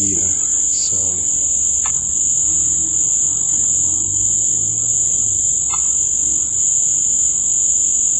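A steady, loud, high-pitched whine that holds unbroken throughout, with a faint low murmur beneath it.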